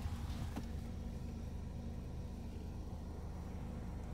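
Car engine idling, heard from inside the cabin as a steady low hum, with a brief rustle and a faint click about half a second in.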